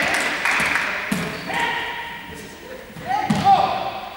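A group of young people's voices and calls echoing in a large sports hall, with a dull thump about a second in and a louder one with a short shout near the end.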